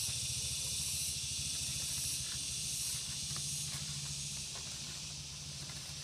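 A steady high-pitched hiss with a low hum beneath it, and a few faint soft ticks.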